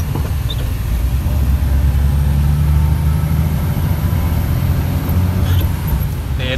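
Truck's engine running steadily while driving, heard from inside the cab as a low, even drone with road noise.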